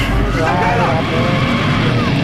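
Screaming over a loud, dense low rumble of horror-film sound effects, the scream wavering up and down in pitch.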